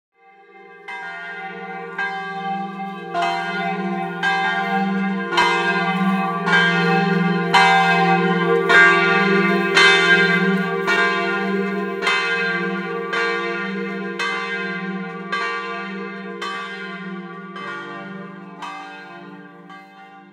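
Church bells ringing, struck in a steady rhythm over a lingering low hum, swelling in loudness and then fading away near the end.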